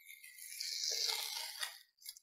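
A paper cover strip peeled off a cardboard question board: a faint papery rustling tear lasting about a second, ending in a small click.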